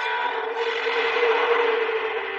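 Background drone: two steady low hum tones with an even hiss over them.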